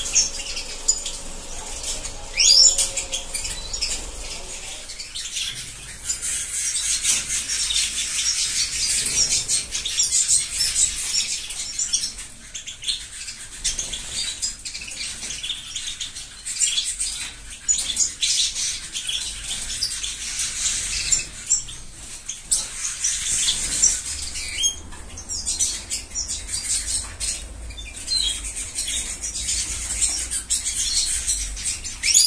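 A roomful of caged canaries and European goldfinches chirping and twittering together without pause, with wings fluttering now and then.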